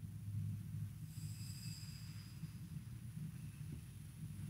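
Faint, steady low rumble of room tone in a quiet church, with a faint high ringing tone for about a second, starting about a second in.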